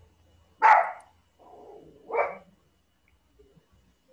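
A dog barking twice, about a second and a half apart, with a quieter sound between the two barks.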